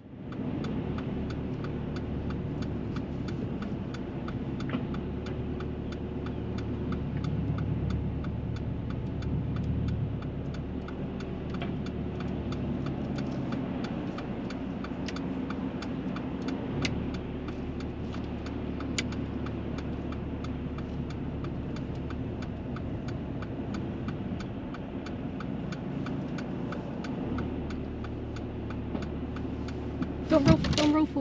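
Car engine running at low speed, heard from inside the cabin, with the turn indicator giving a steady, rapid ticking throughout.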